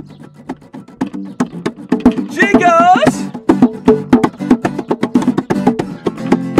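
Acoustic guitar and small acoustic bass playing together, under a rhythm of sharp percussive taps. The music is sparse and quieter for the first two seconds, then fills out, with a brief wordless vocal sliding in pitch a little past two seconds in.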